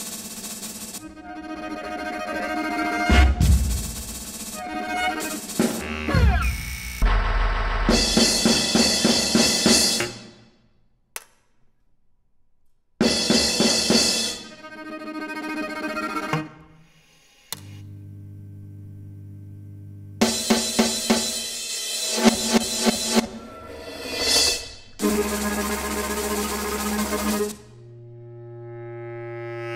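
Contemporary chamber music for drum kit, keyboard, viola, bass clarinet and live electronics, played in dense blocks that start and cut off suddenly. There is a near-silent gap of about two seconds a little before the middle, and later a held low steady tone between blocks.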